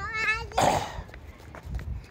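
A toddler's short, high-pitched wavering squeal, followed by a brief breathy burst.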